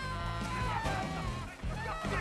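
Saxophone blowing a freestyle jazz line: a held note that then bends and slides through wavering runs, over a bass-heavy backing.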